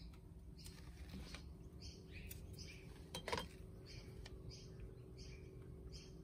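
Faint birds chirping in short repeated calls, with one brief, louder pitched sound about three seconds in.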